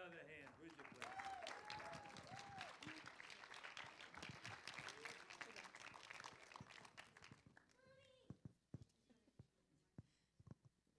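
Audience applauding, with a few voices calling out over the clapping in the first seconds; the applause dies away after about seven and a half seconds into a few scattered claps.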